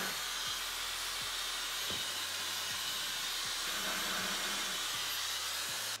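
Dyson Supersonic hair dryer blowing steadily, drying hair spray on a nylon wig cap.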